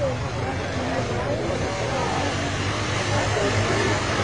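ATV engine running steadily as the quad drives through mud, with people's voices talking over it.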